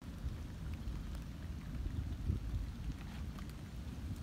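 Low, uneven wind rumble on the microphone at a lakeside dock, with a few faint ticks.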